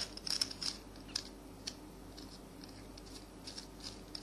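Stainless-steel bolt being screwed by hand through the holes of stacked stainless-steel sink strainers, its thread catching and scraping on the metal in faint, irregular clicks. The holes are made a little smaller than the bolt, so the thread cuts its way through.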